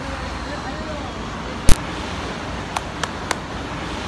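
Steady city traffic hum, with one sharp, loud knock a little before halfway and three quick lighter clicks near the end.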